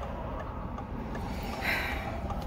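Low steady background rumble inside a car, with a short soft hiss near the end.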